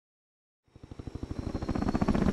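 Helicopter rotor chopping in a rapid, even beat, starting from silence a little under a second in and growing steadily louder.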